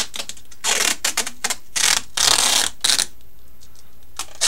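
Duct tape being pulled off the roll and pressed along the edge of a stack of glass panes: several short rips with crackly clicks between them, the longest a little past halfway.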